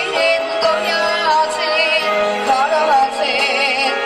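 A boy's singing voice, amplified through a microphone, over a backing music track; the melody moves in held, wavering notes with ornamented turns.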